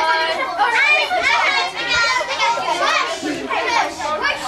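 A group of children talking and calling out over one another, with many high-pitched, excited voices overlapping so that no words stand out.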